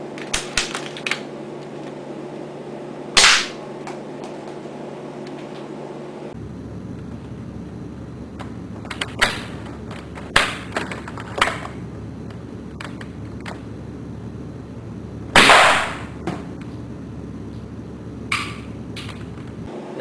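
Crosman Stinger R34 spring airsoft rifle fired one shot at a time, each a sharp snap several seconds apart, with smaller clicks between as it is cocked and reloaded by hand; the loudest shot comes about three-quarters of the way through. A steady low hum runs underneath.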